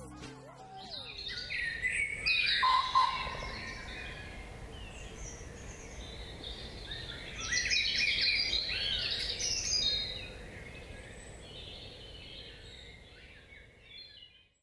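Birdsong: many short chirps and twittering calls over a steady outdoor background hiss. It comes in louder bursts about two seconds in and again from about seven to ten seconds, then fades.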